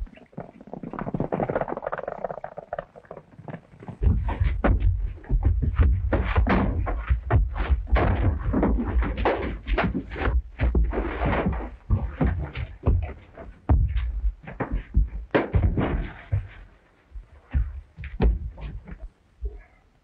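Fistfight sound effects on an old 1930s film soundtrack: a rapid run of thuds and knocks as blows land and bodies strike the log walls and crates, with scuffling. The knocks thin out near the end.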